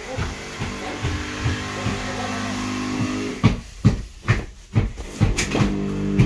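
A power tool motor from the repiping work runs with a steady pitched hum. About three seconds in it stops, and a run of sharp, loud knocks follows. The hum starts again near the end.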